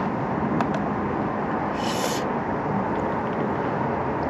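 A spoon clicks lightly against a plastic camping cup, and about two seconds in comes a short slurp of soup. Underneath is a steady background rush.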